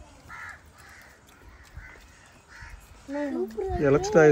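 Four or five faint, short caws, like a crow's, spaced through the first three seconds. A person starts talking loudly near the end.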